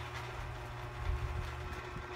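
Steady low background hum between spoken answers, with a faint thin steady tone over it.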